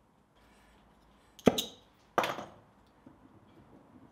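Two sharp knocks about two-thirds of a second apart, each with a short ringing tail.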